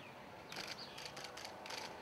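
Press photographers' camera shutters clicking in a quick series, several clicks over about a second and a half.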